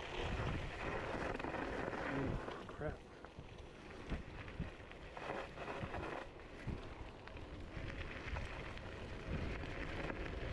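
Wind buffeting the microphone over the rumble of an electric scooter's tyres rolling on gravel, with a few short knocks as it rides over bumps.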